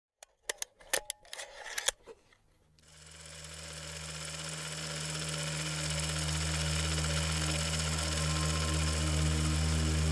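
A few sharp clicks, then from about three seconds in a steady mechanical hum and whir that slowly swells louder, like an old film projector starting up and running.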